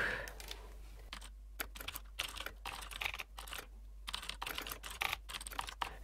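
Typing on a computer keyboard: a fast, irregular run of key clicks with a couple of brief pauses.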